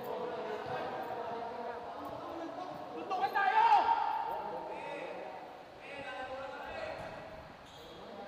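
Several men shouting and talking over one another in an echoing gym during a scuffle, with one voice loudest about three to four seconds in.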